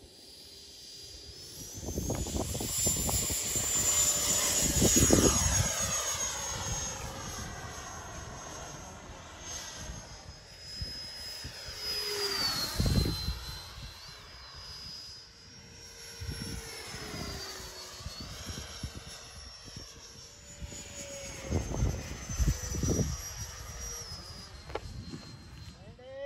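Radio-controlled model jet taking off and flying past: a high whine rises in pitch about a second in as the power comes up, then wavers as it flies, with a rush of air that swells and fades with each pass, loudest about five seconds in and again around thirteen and twenty-two seconds.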